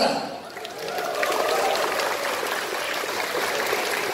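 Audience applauding: an even clapping patter that starts about a second in and keeps going without a break.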